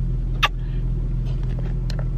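A car's engine and air conditioning running, a steady low hum heard inside the cabin, with one short click about half a second in.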